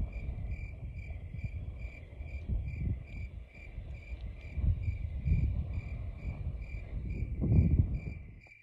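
Cricket chirping sound effect, a steady even chirp about twice a second, laid over low wind rumble on the microphone that swells in gusts, the strongest near the end.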